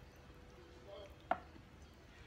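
One short, sharp click of a metal measuring cup knocking against metal cookware while filling is scooped into a muffin tin, over a faint low hum.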